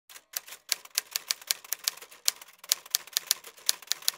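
Typewriter keystroke sound effect: a quick, uneven run of sharp clacks, about five a second.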